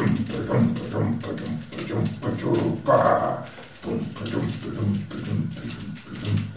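A man's voice making low, wordless vocal sounds throughout, with a louder call about three seconds in.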